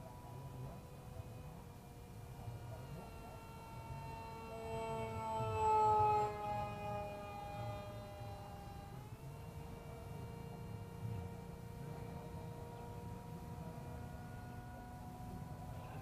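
Electric motor and propeller of a small RC foam parkjet, a Turnigy 2200KV brushless motor, whining steadily in flight. The whine grows louder and slides down in pitch around five to seven seconds in, then jumps up in pitch again about nine seconds in.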